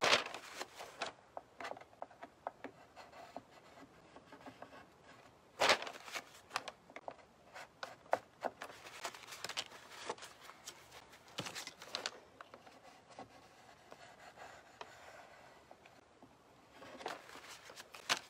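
A plastic card scraping and rubbing over glued decoupage paper on a tray, with scattered soft scrapes and taps of tools being handled and one sharper knock about six seconds in.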